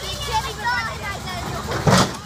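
A backhoe's engine running while its bucket bashes a wrecked SUV. Near the end a loud crash of metal comes as the bucket strikes the body.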